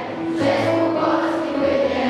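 A children's choir singing together, with held notes changing about every half second.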